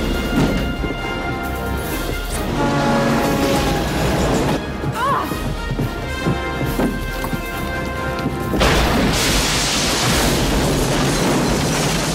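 Film soundtrack: a tense orchestral score under action sound effects, with a loud, sustained rush of noise coming in about two-thirds of the way through and running on under the music.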